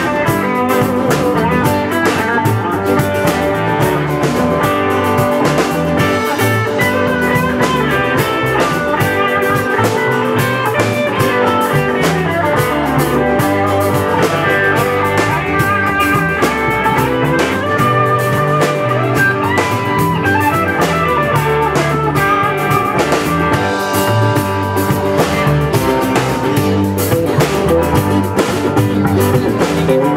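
Live rock band playing: electric guitars over electric bass and a drum kit, with a steady beat.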